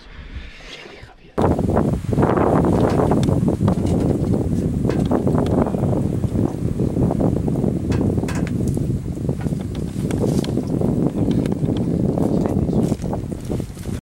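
Wind buffeting the camera microphone: a loud, rough rumble with crackles that cuts in suddenly about a second and a half in and drops away near the end.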